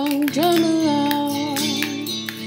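A woman sings two long held notes of a drum-along song over guitar accompaniment, while a homemade spin drum twirled between the palms rattles in quick clicks as its strikers hit the drumheads.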